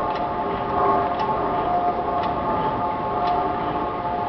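A 1/2 hp overhung-crank Crossley slide-valve gas engine running steadily while it warms up on town gas, with a regular click about once a second over a steady hum.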